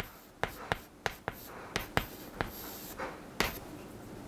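Chalk writing on a chalkboard: a series of sharp taps, about eight, as strokes begin, with faint scratching between them.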